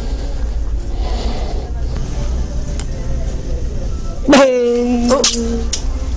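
Steady low hum of store background noise, then about four seconds in a loud, drawn-out vocal "oh" held on one pitch for nearly a second.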